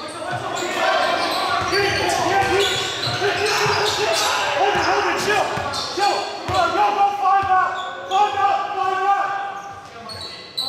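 Basketball game play on a hardwood gym floor: the ball bouncing and sneakers squeaking in short, sliding chirps, with players' voices, all echoing in the large gym.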